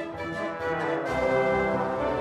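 Orchestral closing-credits music with brass. About a second in, a fuller, deeper part comes in.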